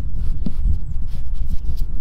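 Hand rubbing and pressing carpet lining onto a van's window frame, a few faint scratchy rubs and ticks, under a steady low rumble on the microphone.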